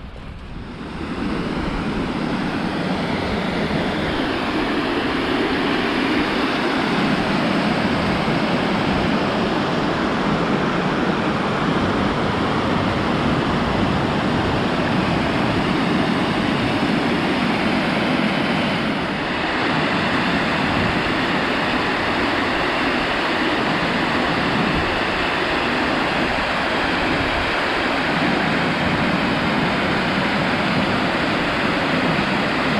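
River water pouring over a stone weir: a steady, loud rushing that comes up sharply about a second in.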